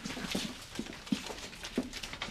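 A run of soft, irregular taps and knocks, a few a second, like footsteps or handling in a small room.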